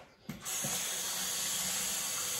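A bathroom tap turned on about half a second in, water then running steadily into the sink.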